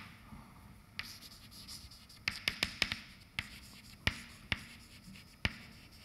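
Chalk writing on a blackboard: a string of sharp taps and short scratches at irregular intervals, bunched together around the middle, as words are chalked.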